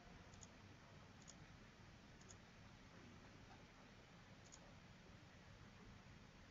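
Near silence with four faint computer mouse clicks spread over a few seconds, over quiet room tone.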